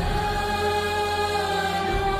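Choral music: voices singing long held notes over a sustained accompaniment, with a new chord coming in right at the start.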